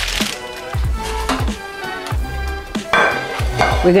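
Background music over the rustle of a parchment-paper fish parcel being handled, with a few light knocks of a glass baking dish on the counter.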